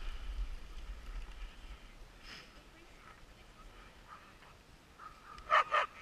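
Sled dogs barking and yipping in a quick run of loud barks near the end. Before that, a low rumble from the sled dies away over the first couple of seconds as the team is halted.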